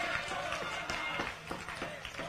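Crowd applause tapering off into scattered claps, with a murmur of voices under it.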